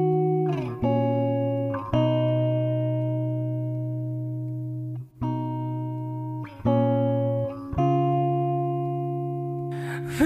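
Acoustic guitar opening a slow ballad with an instrumental intro. Full chords are struck one after another and left to ring and fade, moving to a new chord every one to three seconds.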